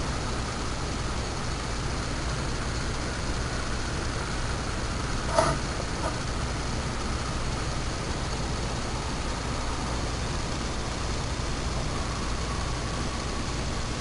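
Steady background hiss with a low hum: room noise with no clear source of its own. One brief faint sound comes about five seconds in.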